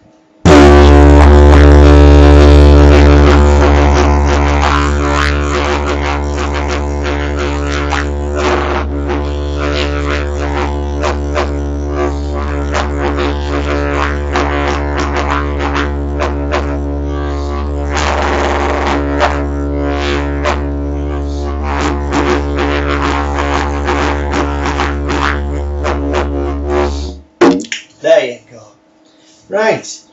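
A 162 cm poplar didgeridoo played as a low, steady drone pitched between C and D. It starts about half a second in and is loudest for the first few seconds, then carries rhythmic accents over the drone, and stops about a second before the end.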